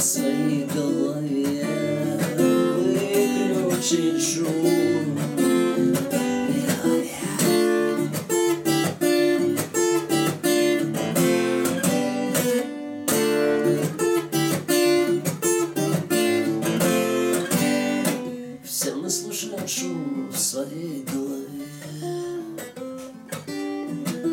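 Acoustic guitar with a cutaway body, strummed in a steady rhythm as an instrumental break. The playing turns quieter and sparser about three quarters of the way through.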